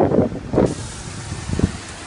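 Gusts buffeting the microphone, then a steady hiss that starts abruptly about half a second in. There is one low knock near the end.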